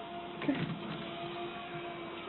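Electric treadmill running, its motor giving a steady two-note hum under the moving belt, with a short knock about half a second in.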